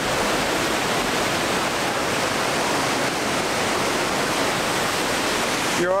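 Waterfall: a steady, loud rush of falling water.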